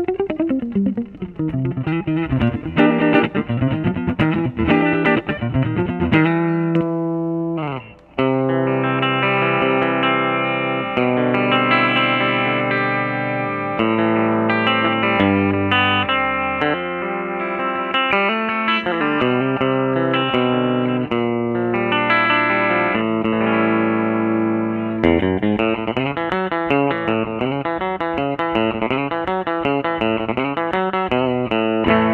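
Danelectro '59M electric guitar with lipstick pickups, played on its neck pickup through a Supro combo amp. Quick picked lines, a falling pitch glide and a brief drop-out about eight seconds in, then ringing held notes and chords, with quick picking returning near the end.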